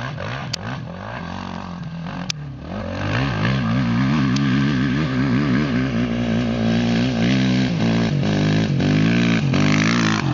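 Honda CRF450R single-cylinder four-stroke dirt bike engine under hard throttle on a steep hill climb. Its pitch wavers up and down as the rider works the throttle, and it gets louder about three seconds in. Two short clicks sound early on.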